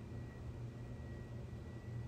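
Steady low background hum with a faint hiss and a thin, steady high tone underneath; no words and no distinct events.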